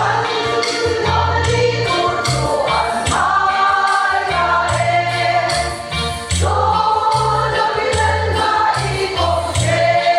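Women's choir singing a gospel hymn together, over keyboard accompaniment with steady bass notes and a regular beat. The voices come in right at the start after a brief dip.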